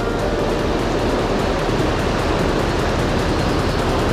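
Mountain stream rushing over rocks in shallow rapids, a steady, loud, even roar of water.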